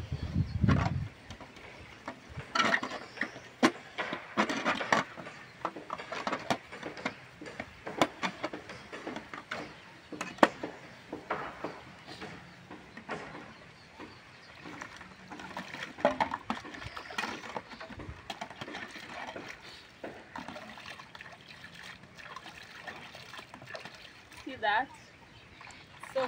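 Aluminium pot lid and metal pots being washed and rinsed by hand in basins of water: repeated clinks and knocks of metal on metal, with water splashing and sloshing.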